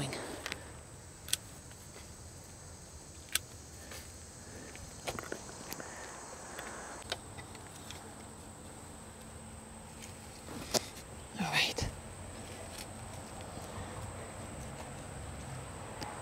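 Quiet hand work in a garden bed: a few sharp clicks and soft rustles, spaced seconds apart, as rose shoots and a chicken-wire cage with sticks are handled. A faint steady high-pitched tone runs underneath.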